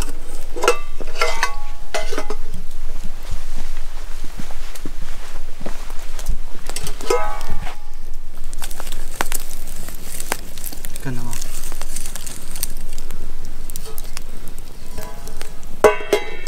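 Wood campfire crackling and popping, with scattered sharp snaps over a steady hiss. A steel camping pot clinks as it is set on the fire grate and handled.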